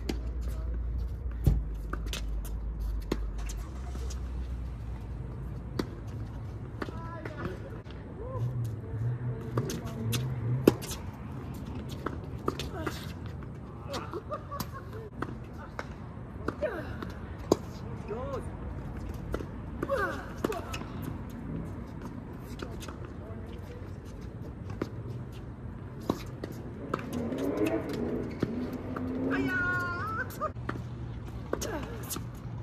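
Doubles tennis in play: sharp knocks of rackets hitting the ball, several seconds apart, with players' voices calling faintly.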